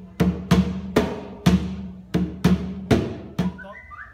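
A hand drum struck in a steady repeating rhythm, four strokes to a phrase that comes round about every two seconds, each stroke at the same low pitch with a short ringing tail.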